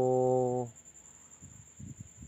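A man's voice drawing out a hesitant "so…" on one steady pitch for under a second, then a pause with a few faint low thumps.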